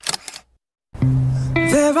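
A camera shutter click sound effect, then, about a second in, a song begins: a low held note with a sung voice gliding above it.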